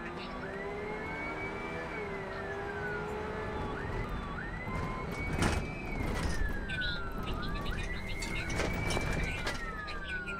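Police car siren wailing, each cycle rising quickly, holding, then falling slowly, about three times, heard from inside the pursuing patrol car over engine and road noise. A short sharp knock cuts in about halfway through.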